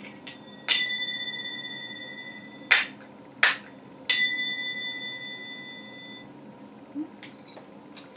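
A pair of extremely lightweight Egyptian finger cymbals (zills) struck together: a clear ring about a second in that fades over about two seconds, two short muted clacks, then another clear ring that dies away over about two seconds. Faint clinks of metal follow near the end.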